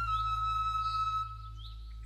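Background music: a held, flute-like note that fades out just past the middle, then short bird-like chirps starting near the end over a steady low hum.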